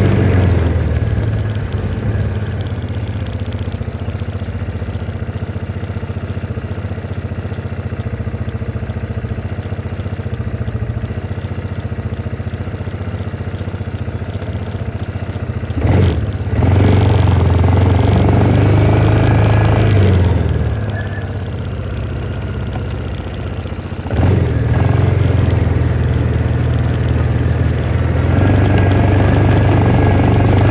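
Engine of a small farm utility vehicle running while it drives over rough pasture: a steady low drone that swells louder about halfway through and again near three-quarters in as the throttle opens, each rise starting with a sharp knock.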